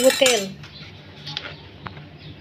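A few faint, light metal clinks of kitchen utensils, heard after a word of speech ends.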